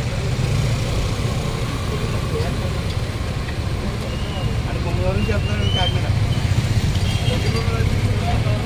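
A vehicle engine idling with a steady low rumble, with voices of people talking faintly around it.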